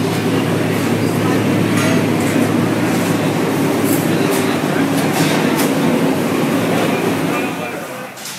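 Loud, steady machine drone with a low hum, dying away near the end, with a few faint clicks partway through.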